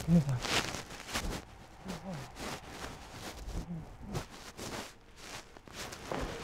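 Hoofbeats of a mare moving under a bareback rider on soft arena footing: a run of irregular thuds, several a second, with a few short low voice sounds among them.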